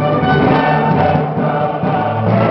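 Live baroque music: a small string orchestra with cello playing sustained, overlapping notes, with a choir singing along.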